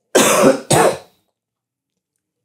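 A man coughing twice in quick succession, two loud coughs about half a second apart.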